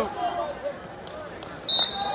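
A referee's whistle blown sharply near the end, a single shrill steady tone that stops the wrestling. Before it come a shouted word from the sideline and a couple of soft thuds on the mat.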